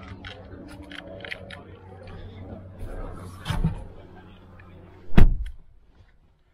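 The Ford Raptor pickup's engine idling with a steady low hum, under scattered clicks and handling noises as someone climbs in. A loud thump comes about five seconds in as a door shuts.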